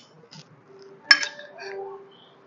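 Metal spoon clinking against a small ceramic bowl while scooping out butter. A light tap comes first, then one sharper, ringing clink about a second in.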